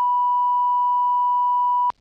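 Steady 1 kHz line-up test tone on the sound feed, a single unbroken pitch that cuts off sharply near the end. It alternates with a spoken ident naming the feed, the broadcast line-up signal sent while the meeting is paused.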